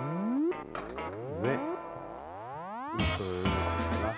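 Background music: slow rising, sliding notes for the first three seconds, then a fuller, louder passage with a steady bass from about three seconds in.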